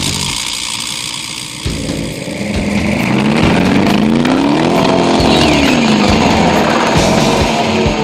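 A car engine revving, its pitch climbing for about three seconds and then falling back, over background music.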